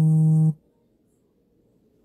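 A loud, buzzy tone held at one low, unchanging pitch, which cuts off abruptly about half a second in.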